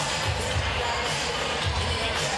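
Music with a steady bass beat, about two beats a second.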